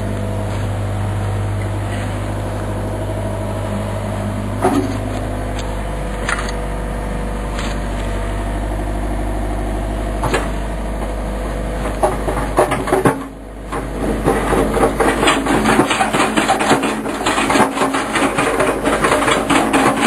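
John Deere backhoe's diesel engine idling steadily with a few single knocks, then working harder from about twelve seconds in with a dense, fast rattle as it shifts a concrete retaining-wall block hung on a chain.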